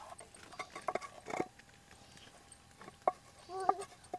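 A utensil knocking and scraping against a metal pot as cooked onion chutney is tipped out of it into a stone mortar: a cluster of sharp knocks in the first second and a half, another about three seconds in. Near the end, a short animal call with a wavering pitch.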